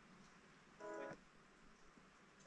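Near silence with a faint background hiss. About a second in comes one short electronic tone of several steady pitches sounding together, lasting about a third of a second.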